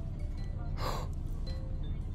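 Faint background music, with one quick, sharp intake of breath, a gasp, a little under a second in.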